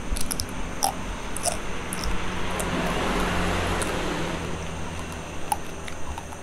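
Crispy babi guling (Balinese spit-roast pig) skin crunching between the teeth as it is bitten and chewed: scattered sharp crackles. A broad rushing noise swells and fades behind it in the middle.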